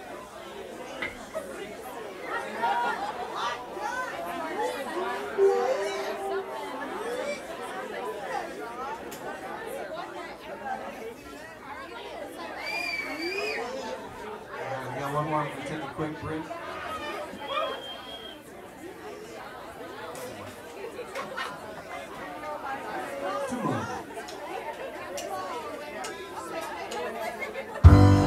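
Indistinct overlapping chatter of a crowd in a bar, with no music playing. The band comes in loudly right at the very end.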